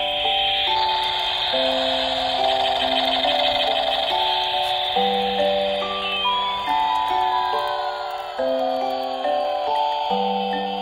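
Battery-powered toy helicopter playing its built-in electronic tune: a simple beeping melody of held, stepped notes over a high hiss, with a siren-like tone sliding down in pitch through the second half.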